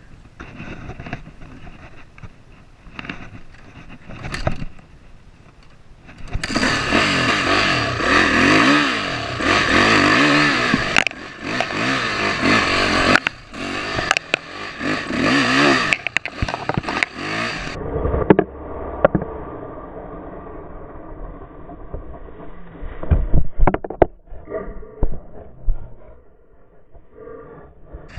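Yamaha YZ450F four-stroke single-cylinder dirt bike engine, quiet at first, then revving hard for about ten seconds under load. It then drops to a lower, uneven run broken by knocks, thumps and scraping near the end.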